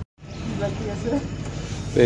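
Steady low background noise with faint voices.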